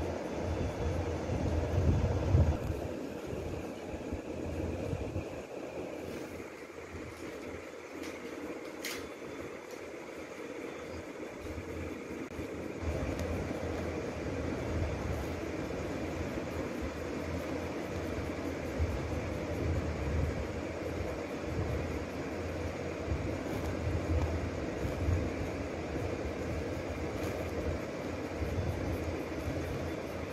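Graphite pencil scratching over paper while shading, over a steady low rumble, with one sharp click about nine seconds in.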